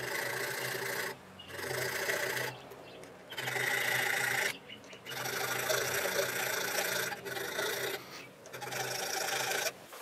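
Small hand file rasping back and forth across a metal airsoft inner barrel, cutting a ring groove into it. It goes in long strokes of about a second each, with short pauses between them.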